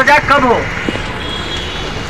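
A man speaks briefly, then a steady rush of road traffic noise continues under a crowd of people, with a faint high tone for about half a second.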